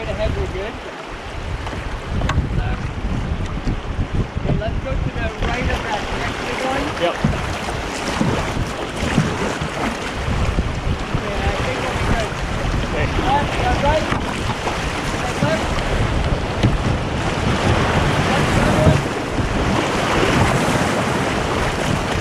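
Whitewater rapids rushing and splashing around the hull of a canoe running through them, with wind buffeting the microphone. The water grows louder over the second half.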